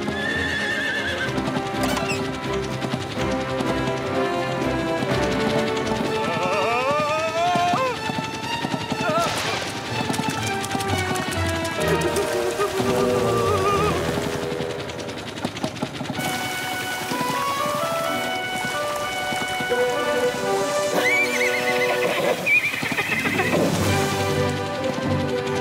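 A cartoon horse neighing a couple of times over background music, while dangling in a harness beneath a flying machine.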